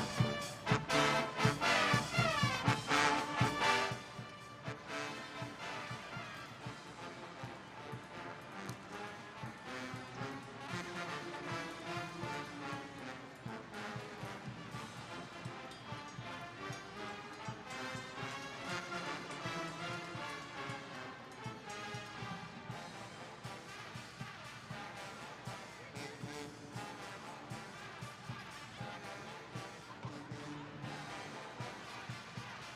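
Brass-led band music playing in the arena during a break in play, with loud drumming for the first four seconds or so before the band carries on more quietly.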